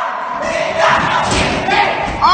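Heavy thuds and scuffing of feet on a hard floor as a man stumbles about, with people shouting over it.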